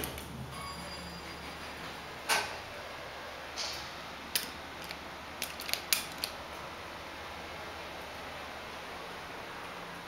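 Steady low hum inside a ThyssenKrupp traction freight elevator car, with a handful of sharp clicks as its floor buttons are pressed, a cluster of them about six seconds in.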